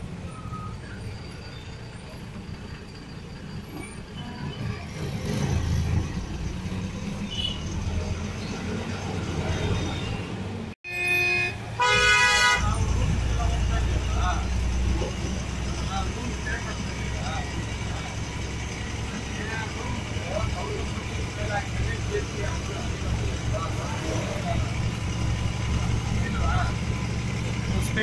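Passenger bus engine running and road rumble heard from inside the cabin, with a horn sounding for about a second and a half just before the middle; the rumble is louder after the horn.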